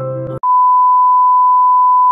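Soft piano music cuts off, and about half a second in a loud, steady, high-pitched test-tone beep starts and holds unchanged: the beep that goes with TV colour bars.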